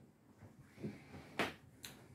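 Quiet room tone broken by a sharp click about one and a half seconds in and a fainter click just before the end.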